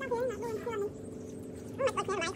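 A dog whining: a high, wavering whine for about a second, then a second bout near the end.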